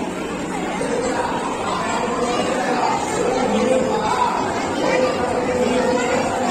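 Crowd chatter: many people talking at once in a continuous babble, with no single voice standing out.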